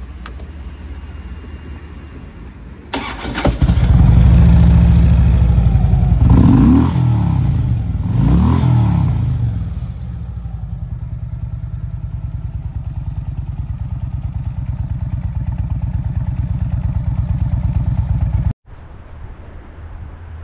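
Harley-Davidson Electra Glide's air-cooled V-twin engine is started and catches about three seconds in. It is blipped twice with the throttle, each rev rising and falling, then settles to a steady, evenly pulsing idle that cuts off suddenly near the end.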